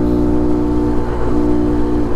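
Honda Monkey 125's single-cylinder four-stroke engine running at a steady cruising speed, a steady engine drone whose pitch dips slightly about halfway through.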